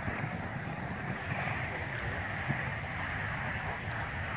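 Steady outdoor background noise with a ragged low rumble of wind on the microphone and no distinct event standing out.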